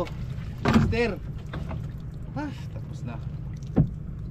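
A low steady rumble with a few short wordless vocal sounds, rising and falling in pitch, from a man working a gill net in a small outrigger boat, and one sharp knock near the end.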